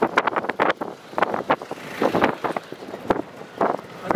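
Wind buffeting the microphone in the open, with a rushing gust about two seconds in and irregular crackles and knocks throughout.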